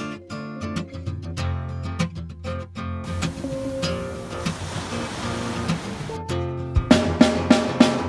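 Background music: a plucked acoustic guitar line, with a soft wash of noise under it in the middle, then a drum kit coming in near the end.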